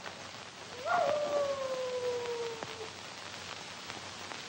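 A canine howl: one long call that rises briefly about a second in, then falls slowly in pitch for nearly two seconds and fades, over a steady soundtrack hiss.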